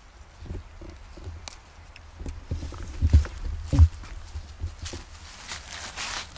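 Handling noise from a phone camera being moved about: rustles and small knocks, with two louder low thumps about three seconds in and just before four seconds.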